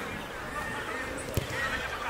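Faint voices calling and talking across an open field over background noise, with one sharp knock about a second and a half in.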